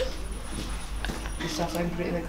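A person's wordless voice: a short held vocal sound, like a hum or whine, begins about one and a half seconds in over low shop room noise.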